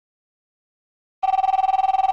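Telephone ringing: after a second of silence, a warbling electronic ring tone starts about a second in, one burst of a repeating ring cadence.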